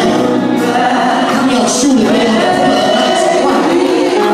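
Several women singing gospel together into handheld microphones, voices held and sliding through the phrase.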